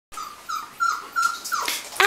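Golden retriever whining: five short, high-pitched whines in quick succession.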